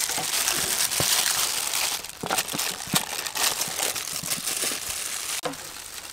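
Disposable plastic gloves crinkling as dragon fruit is handled and sliced with a knife. A dense crinkling hiss gives way after about two seconds to scattered clicks and taps of the blade and fruit on the tray.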